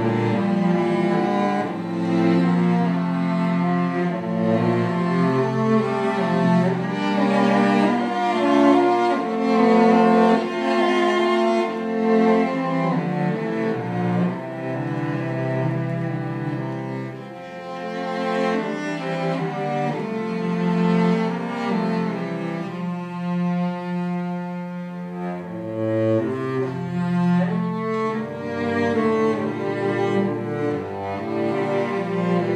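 Three cellos played with the bow in a classical chamber trio, holding long notes in several interwoven lines.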